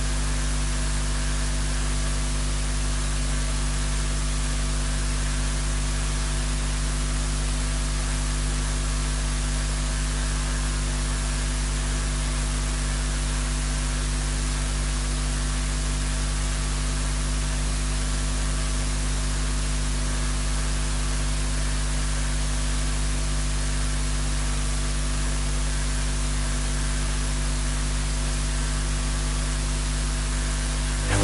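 Steady electrical hum under a layer of hiss, with several constant low tones and no change in level.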